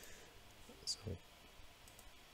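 A few faint computer mouse clicks. The loudest is a short one about a second in.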